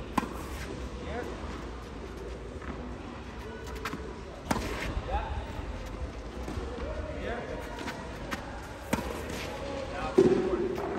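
Tennis ball struck with a racket: three sharp hits about four and a half seconds apart, with softer ball ticks between them.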